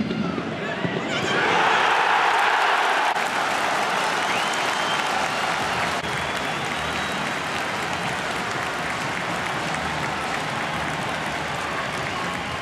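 Football stadium crowd cheering and applauding a home goal. The roar swells about a second in and holds loud for a couple of seconds, then settles into steady cheering and clapping.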